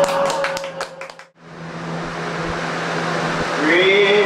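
Scattered audience clapping over a last guitar note that rings and dies away about a second in. After a brief drop, a man's voice comes in with a rising sung note near the end.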